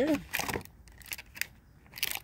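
A few light, scattered clicks and taps from handling a plastic blister-packed toy car.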